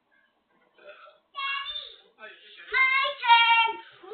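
A young child's high-pitched voice: after a quiet first second, a short sung call, then two louder held calls near the end, each sliding slightly down in pitch.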